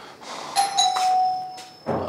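Doorbell chime ringing once about half a second in, its clear tone dying away over about a second, followed by a short thump near the end.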